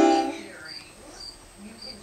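A toddler's long sung note over an electronic keyboard fades out in the first half second. Then, in the quiet, a cricket chirps faintly, a short high chirp about twice a second.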